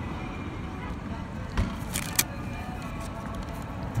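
Steady outdoor hum of road traffic, with a few short clicks near the middle.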